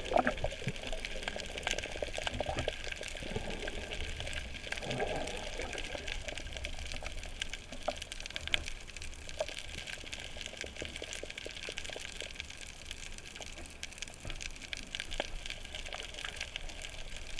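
Underwater sound picked up by a submerged camera: a steady wash of water with a low rumble, scattered sharp clicks and crackles throughout, and bubbly gurgles in the first second and again around four to five seconds in.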